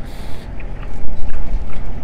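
Low, steady rumbling noise with no clear pitch, louder from about a second in.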